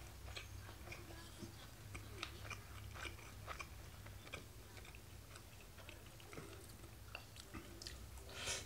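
A man chewing mouthfuls of curry rice with fried pork and cabbage, heard as many soft, irregular wet clicks of the mouth, over a low steady hum.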